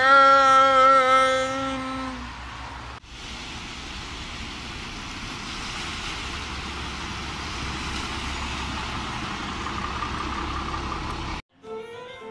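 A voice holds a single dramatic sung note for about two seconds. Then a city bus passes on a flooded road, its engine rumbling and its tyres swishing and splashing through standing water, until the sound cuts off suddenly near the end.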